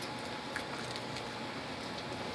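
Low steady room noise with a faint steady hum and a few soft, short ticks.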